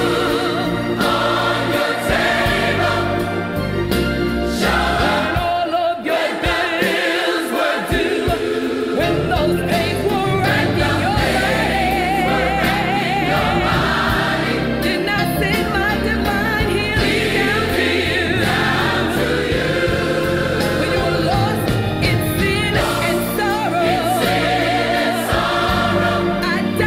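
Recorded gospel song: a choir singing with vibrato over a band accompaniment. The bass drops out briefly about six seconds in.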